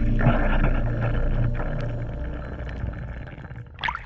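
Muffled underwater sound picked up by a camera in its housing: a low steady rumble that fades away over the few seconds. A short rush of water comes near the end.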